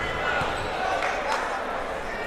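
A basketball bouncing a few times on a hardwood gym floor as a free-throw shooter dribbles at the line, under the chatter of voices in the gym.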